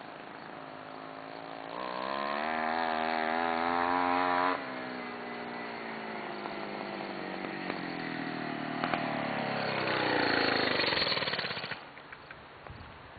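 Homelite ST-155 25cc clutchless two-stroke string-trimmer engine with a drilled-out muffler, driving a bicycle through a friction spindle. It revs up with rising pitch, eases off about four and a half seconds in, then runs louder again as the bike passes with its pitch falling, and drops away sharply near the end.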